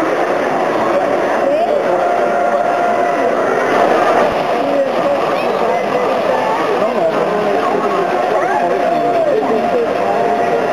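Chatter of many voices from a crowd of onlookers, steady throughout, over the running of S gauge model trains on the layout's track.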